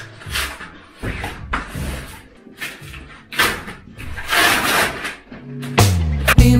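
A large cardboard box being handled and opened on a floor: irregular bursts of cardboard scraping and rustling with light bumps. Music with a bass line comes in loudly near the end.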